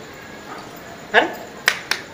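Two sharp clicks in quick succession near the end, just after a short questioning "eh?" from a man.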